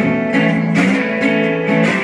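Acoustic guitar strummed in a steady blues rhythm: an instrumental break between verses, with no singing.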